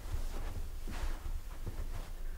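Quiet room with a steady low rumble and a few faint, soft footfalls of people walking on carpet.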